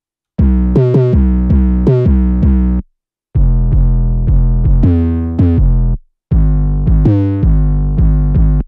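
Deep 808-style synth bass line playing solo in B minor, its notes jumping between root and the octave above. It plays in three short phrases with brief silences between them, one note sliding in pitch partway through.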